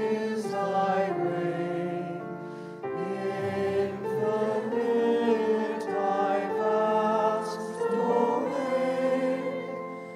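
A choir singing a slow sacred chant or hymn in long held notes, with a short break between phrases about three seconds in.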